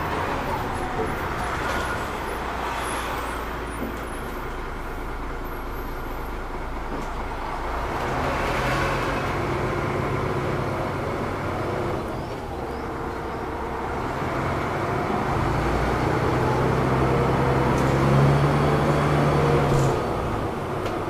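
Cabin noise aboard a DAF DB250LF double-deck bus on the move: the diesel engine and road noise, with the engine note growing steadily louder in the second half as the bus pulls away and picks up speed.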